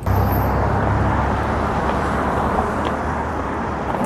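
Street traffic: a steady rush of passing cars on a multi-lane road.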